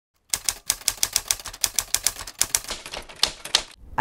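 Rapid run of typewriter keystrokes, about six sharp clicks a second, starting just after the beginning and stopping shortly before the end.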